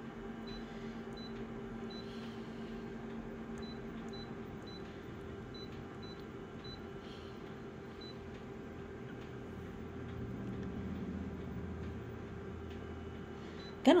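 Office colour photocopier humming steadily while its touchscreen gives a series of short high beeps as keys are tapped. A low rumble from the machine swells for a couple of seconds about ten seconds in.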